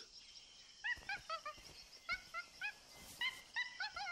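White-faced capuchin monkey calling: a series of short, high squeaky chirps in small clusters that start about a second in.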